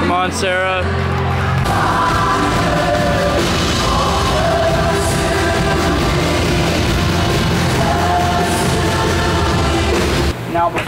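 Live worship band playing sustained chords over a steady bass. A lead vocalist's voice is heard in the first second or so.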